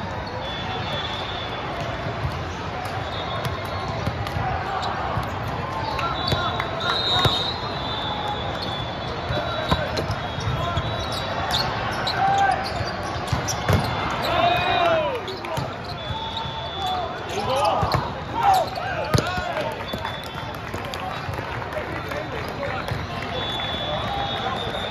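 Busy volleyball hall: players calling out and spectators chattering, with repeated thuds of volleyballs being struck and bounced. A run of louder shouts comes past the middle.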